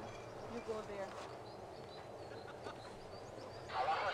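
Faint outdoor ambience with distant, indistinct voices and a few faint high chirps. A man's voice starts close to the microphone near the end.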